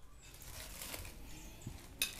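Quiet room tone with a few faint light clicks, one slightly clearer near the end.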